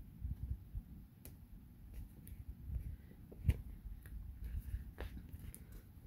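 Quiet handling of book-page paper on a craft mat: soft rustling with scattered small clicks and one sharper tap about three and a half seconds in.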